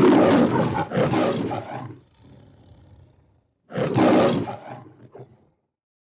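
A lion roaring. There is one loud roar in two surges over the first two seconds, then a quieter stretch, then a second roar about four seconds in that fades out.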